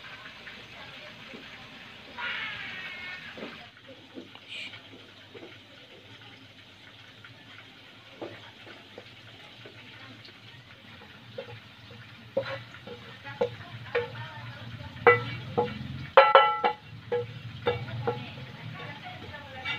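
Spatula stirring a shredded-vegetable filling in a frying pan with a light sizzle. In the second half comes a run of sharp knocks and scrapes as the pan is scraped out into a plastic bowl, the loudest near the end.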